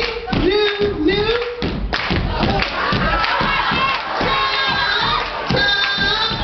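Step team stepping: rhythmic stomps and hand claps in a steady beat of about three to four a second. A shouted chant sounds in the first second and a half, and a crowd cheers and shouts throughout.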